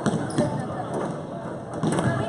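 A basketball being dribbled on a gym floor, a few bounces, under the voices of people in the gym.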